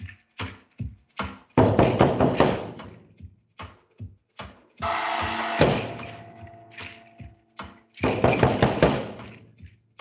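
Solo hand percussion: a bunch of seed-pod rattles shaken in three longer rattling bursts, with quick sharp stick taps and knocks between them.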